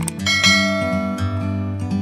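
A click, then about half a second in a bright bell chime that rings out and fades over about a second: the notification-bell sound effect of a subscribe-button animation. It plays over background music of strummed acoustic guitar.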